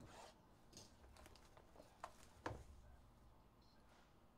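Near silence with faint handling noise from shrink-wrapped cardboard hobby boxes being moved on a table: a soft rustle at the start, then a few light taps and clicks, the sharpest about two and a half seconds in.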